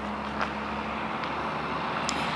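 Steady outdoor background noise with a low, even hum and rumble, and a faint tick about half a second in.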